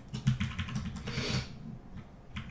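Computer keyboard typing: a quick run of key clicks, with a short hiss just after a second in.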